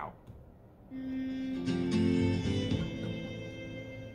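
Guitar music begins about a second in: a chord rings out, more notes join and then sustain.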